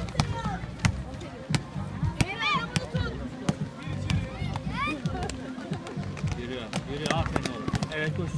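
Basketball dribbled on an outdoor hard court: repeated sharp, irregularly spaced bounces, with players' voices in the background.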